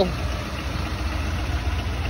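Chevrolet Silverado 3500's 6.6-litre Duramax V8 turbo-diesel idling steadily, a low, even beat.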